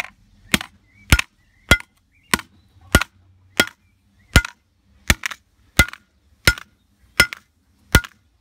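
A steel crowbar repeatedly striking a laptop hard drive on brick paving: sharp metallic clanks about one and a half times a second, each with a short ring, about a dozen blows with one quick double hit midway.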